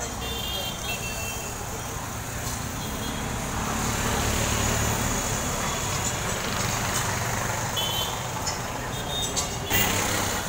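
Steady street traffic noise with a low engine hum, swelling around the middle as a vehicle passes. Brief high tones come near the start and again near the end.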